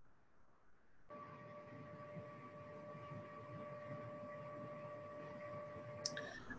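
Near silence for about a second, then a faint steady hum with a pitched whine and low background noise, as when a call participant's microphone opens before she speaks.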